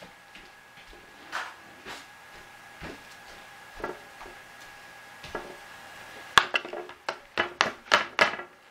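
A few faint scattered knocks over a faint steady high tone, then, about six seconds in, a quick run of loud, sharp knocks and clatter as a cardboard box and its contents are handled close to the microphone.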